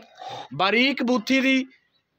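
A man's voice speaking briefly in the middle, then near silence.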